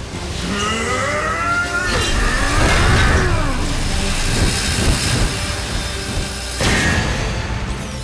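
Cartoon battle sound effects over background music. Gliding energy-attack tones sweep up and down in the first seconds, a dense layered clash follows, and a sudden blast comes near the end.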